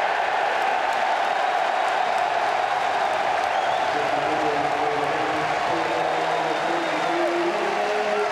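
Football stadium crowd cheering and applauding a goal, a steady roar of many voices. About halfway through, a chant sung by many fans rises within it.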